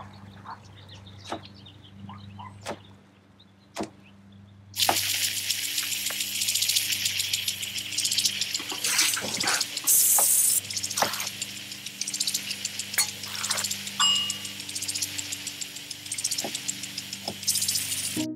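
A kitchen knife cutting a cucumber on a wooden cutting board, a few sharp separate chops over a low steady hum. About five seconds in, a lawn sprinkler fed by a garden hose comes on, and water sprays with a loud, steady hiss through the rest.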